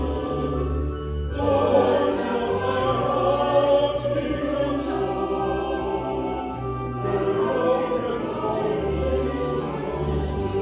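Small mixed church choir of men and women singing together in held notes, with a brief dip about a second in before the singing swells again.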